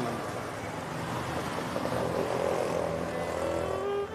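A motor vehicle on the road, its engine running steadily and growing slightly louder.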